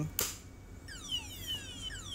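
A single knock on a wired shock (vibration) detector. About a second later an alarm starts sounding as a series of falling, sweeping tones, signalling that the armed zone has been triggered.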